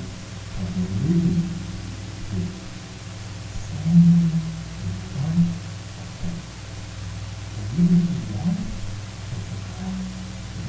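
A man talking, his voice muffled so that mostly its low pitch comes through.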